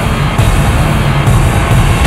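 Loud trailer music with a heavy low end.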